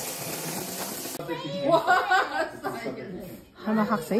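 Tap water pouring into a stainless steel bowl of water, cutting off suddenly about a second in. A voice follows, with some laughter.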